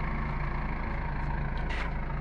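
A motor vehicle's engine idling, a steady low hum and rumble, with a short hiss near the end.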